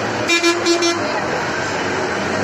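A vehicle horn sounding in a quick run of about four short toots, over a steady background of street noise.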